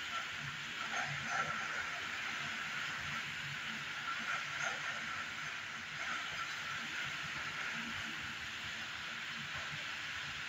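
Heavy wind-driven rain in a thunderstorm, a steady hiss of downpour.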